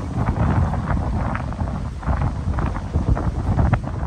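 Wind buffeting the microphone in uneven gusts, with the steady rush of a fast-flowing river beneath.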